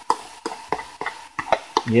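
Chopped scallions and scotch bonnet peppers tipped from a plastic container into a frying pan, sizzling in hot oil, with several light clicks and taps as the pieces and container hit the pan.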